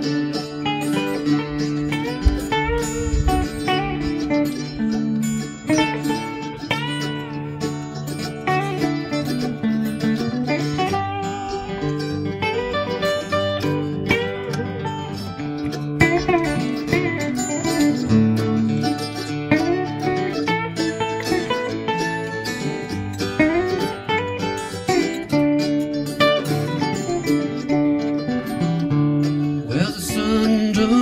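A folk-country band of electric guitar, acoustic guitar and mandolin playing an instrumental passage together, with lead notes bending up and down in pitch.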